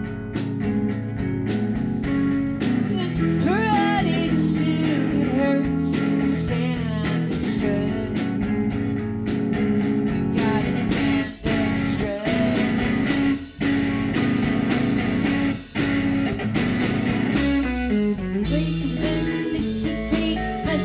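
A live indie rock band playing loud together: electric guitar, violin, bass guitar and drums with cymbals. The music breaks off sharply three times for an instant in the second half.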